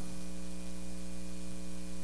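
Steady electrical mains hum with a faint hiss, heard in a pause in the speech.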